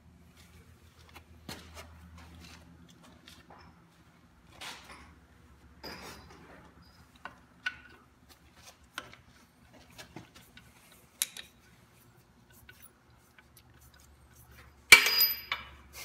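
Scattered metallic clinks and taps of hand tools and parts against a Borg Warner Velvet Drive marine transmission as it is fitted and wrenched onto the engine. A louder metal clatter comes about a second before the end.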